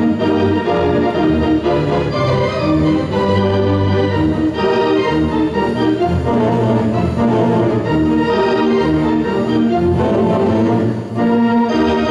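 Theatre organ playing full sustained chords over a heavy bass line.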